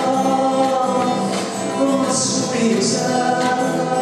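A man singing solo to his own acoustic guitar in a reverberant hall, holding long notes, with sharp sung "s" sounds about two and three seconds in.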